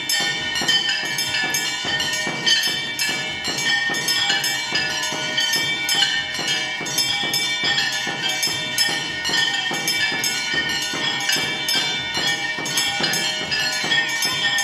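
Temple bells ringing continuously with fast, clanging metal percussion in a steady, even rhythm, a dense ringing din without singing.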